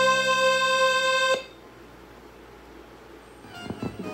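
Recorded accompaniment music holds a final sustained chord that cuts off suddenly about a second and a half in. Low room tone follows, with a few soft knocks near the end.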